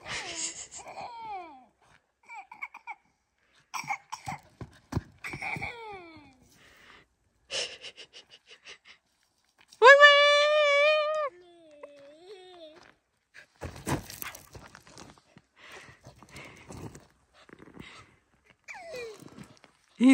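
Scattered short wordless vocal sounds, with one loud, held, wavering high call about ten seconds in, followed by a lower sliding call.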